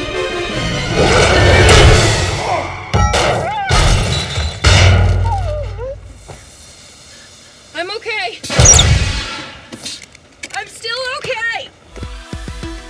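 Dramatic film soundtrack: orchestral score with heavy low hits in the first few seconds, then short wavering vocal cries and a loud crash-like hit about two-thirds of the way in.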